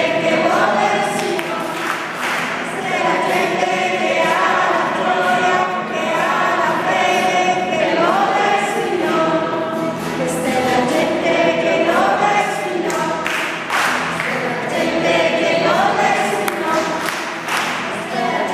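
Church congregation singing a hymn together, a group of voices holding long notes in phrases that rise and fall.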